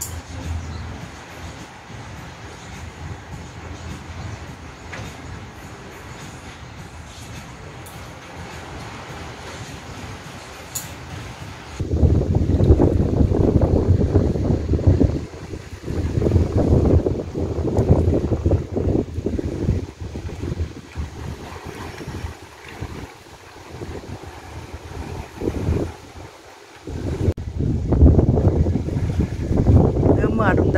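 Wind buffeting the microphone in irregular gusts of low rumbling from about twelve seconds in, after a steadier, fainter hiss.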